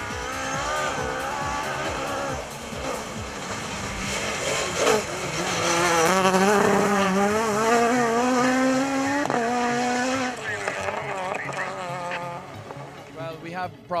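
Ford Fiesta rally car's engine revving hard on a tarmac stage. The pitch climbs steadily and is loudest a little past the middle, then drops sharply about nine seconds in and fades away.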